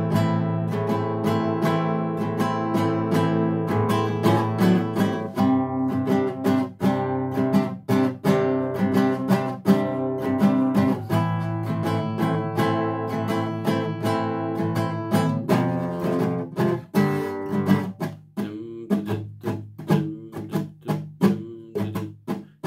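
Classical nylon-string guitar strummed in an even rhythm of alternating down and up strokes, the chord changing every few seconds. In the last few seconds the strokes become more separated, with short gaps between them.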